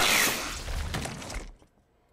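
A sudden loud crash of something shattering and breaking, with a clattering tail that dies away over about a second and a half.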